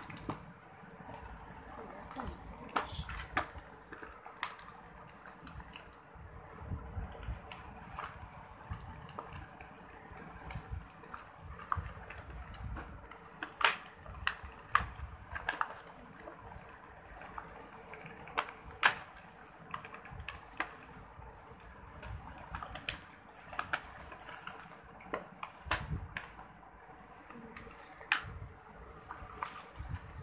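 Plastic packaging and bubble wrap being handled and torn open by hand: irregular rustling with scattered sharp crackles and crinkles.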